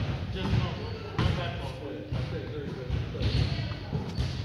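Players' voices echoing in a large gymnasium, with a few sharp thuds of a volleyball against the hardwood floor and hands.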